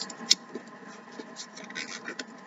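Scrap paper being rolled around a pen on a tabletop: faint rustling and small crinkling ticks, with one sharp click near the start.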